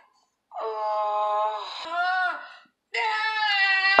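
A baby's high, drawn-out crying wail from a television, heard twice with a short break in between.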